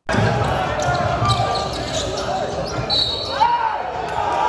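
Live sound of a basketball game on an indoor court: the ball bouncing, players and spectators calling out, and a short high squeak about three seconds in. It cuts in suddenly at the start.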